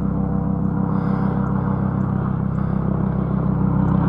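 Helicopter drone: a low, steady hum with a regular beat, no voices over it.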